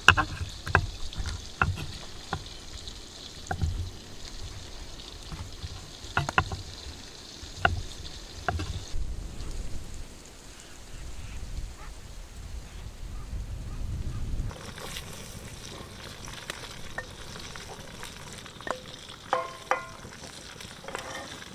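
Large kitchen knife cutting goat's-milk cheese on a wooden board: sharp knocks of the blade hitting the board, about one every second or two, through the first half. Later, a cauldron over a campfire sizzles steadily, with a couple of ringing metal clinks near the end.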